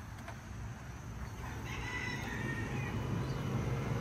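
A rooster crowing faintly, once, from about a second and a half in, over a low steady hum.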